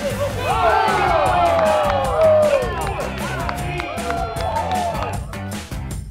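A few people cheering and whooping together over rock music with a steady beat. The cheering breaks out just after the start, is loudest about two seconds in, and dies away near the end.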